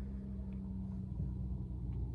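Steady low hum of a car heard from inside its cabin.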